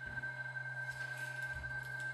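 Electronic sound-installation drone: a steady pure high tone that comes in suddenly at the start, held over a low steady hum, with faint scattered clicks and crackles.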